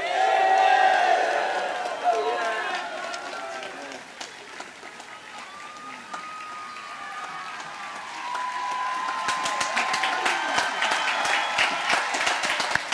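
A crowd cheering and shouting, loudest at first and fading over the first few seconds, then clapping that builds from about eight seconds in.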